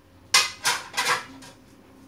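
Plates clattering as they are stacked onto a cupboard shelf: a quick run of four sharp clatters within about a second, the first the loudest.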